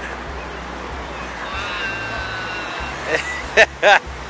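Steady roar of Niagara Falls, the falling water heard as an even rushing noise, with a short burst of voice near the end.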